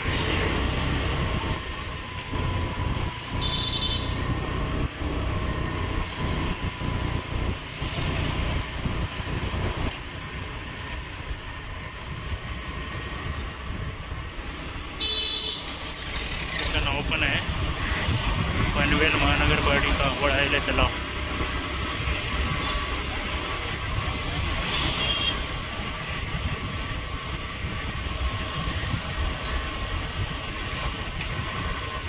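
Street traffic with engines running steadily and short horn toots a few times, with voices in the background.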